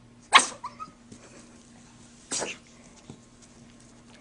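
Small dog making two short, sharp sounds about two seconds apart, the first the louder, with a brief squeak just after it.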